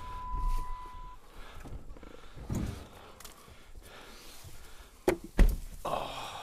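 A few knocks and thumps from firewood rounds being handled at a pickup's tailgate, with two sharp, louder knocks about five seconds in. A steady electronic tone stops about a second in.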